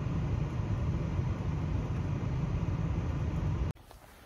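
Steady low rumble of a moving vehicle, cutting off suddenly shortly before the end.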